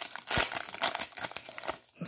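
Foil wrapper of a baseball card pack crinkling in a dense run of irregular crackles as hands open the pack and pull the cards out.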